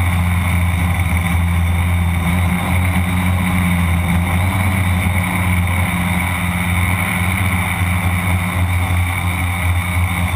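A tricopter's three electric motors and propellers running steadily in flight, heard from the camera mounted on the craft as a loud, even drone.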